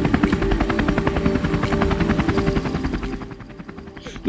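Helicopter running, its rotor beating in a rapid, even rhythm that fades away near the end.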